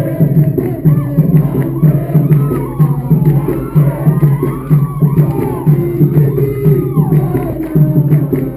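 Capoeira roda music: a steady drum beat with the surrounding crowd singing a chant and clapping along.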